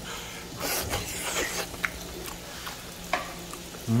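Pieces of beef tripe and large intestine (teukyang and daechang) sizzling in a frying pan, with a few light clicks of a utensil against the pan.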